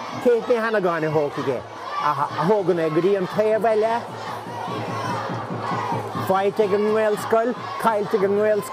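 Crowd of spectators shouting, with several raised voices calling out in bursts and a lull in the middle.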